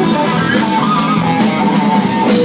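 Live rock band playing loud between sung lines: an electric guitar melody over drums.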